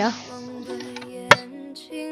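Background music with held notes, and about 1.3 s in a single sharp knock: a bamboo stake being struck as it is driven into the ground.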